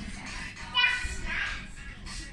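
A young child's high-pitched shout just before a second in, then a shorter second call, amid children playing.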